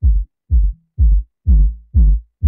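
Ableton Live 10 Drum Buss 'Boom' low-end generator heard on its own, a sub-bass tone struck on every kick, two a second, four in all. The tails grow longer near the end as the Boom's Decay is turned up, letting the bass sustain.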